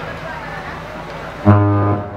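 A single low, loud, sustained note from an amplified band instrument through the PA during a soundcheck, starting suddenly about a second and a half in and held for about half a second before it cuts off, over background chatter.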